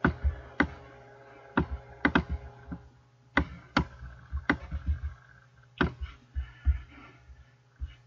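Computer keyboard keys and mouse buttons clicking: about ten sharp, irregularly spaced clicks over a faint steady hum.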